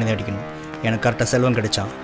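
A song playing: a low male voice sings held, sliding notes over a music backing.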